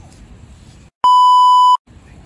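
A loud edited-in bleep: one steady high-pitched tone lasting under a second, about halfway through, with the soundtrack cut to dead silence just before and after it, the way a censor bleep covers a spoken word. Before it, only faint low background noise.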